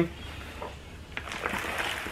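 Hands scooping and brushing loose potting mix over a plastic seed-starting cell tray: faint rustling and scraping, with a few light crackles from about a second in.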